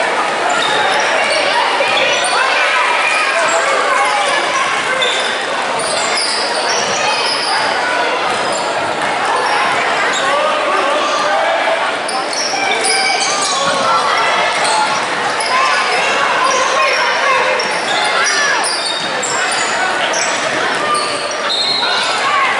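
Basketball being dribbled on a gym's hardwood floor during play, with short sneaker squeaks, over a steady mix of spectators' and players' voices echoing in the hall.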